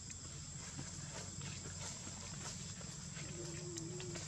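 Outdoor ambience: a steady high-pitched insect drone with scattered faint ticks, and a short low call about three seconds in.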